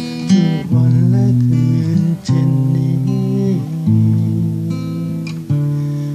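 Acoustic guitar played without singing: chords strummed and left ringing, changing about every second and a half.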